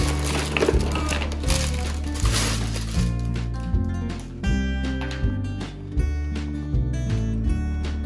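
Plastic bristle building blocks rattling and clattering as they are poured out of a plastic bag into a cardboard box, for the first three seconds or so, over background music that then carries on alone.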